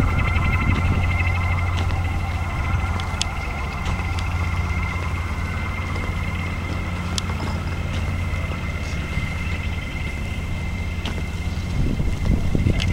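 Steady low mechanical hum with a thin, high steady whine above it, and a few light clicks scattered through.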